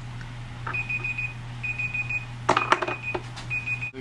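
Tablet countdown-timer alarm beeping at a high pitch, in repeated runs of rapid beeps: the 30-second time limit is up. A short loud burst comes about two and a half seconds in, and the beeping stops just before the end.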